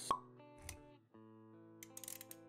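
Quiet intro sound design: a sharp pop just after the start, a softer second hit a little after half a second, then soft sustained music chords.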